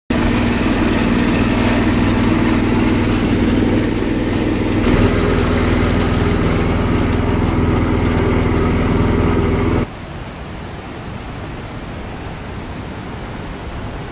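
A small boat engine driving a wooden river ferry runs steadily and loudly, its note shifting slightly about five seconds in. About ten seconds in it gives way abruptly to a quieter, steady rush of river water running over rocks.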